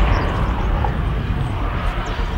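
A steady low rumble of outdoor noise, strongest in the deep bass.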